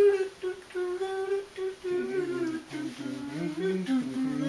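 Closed-mouth humming of a wandering tune in held, gliding notes, dropping into a lower register about halfway through.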